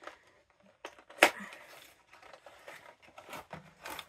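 Small cardboard Hallmark Keepsake ornament box being opened by hand: a sharp click of the flap about a second in, then scraping and rustling of the cardboard and its packing, with a few more light clicks.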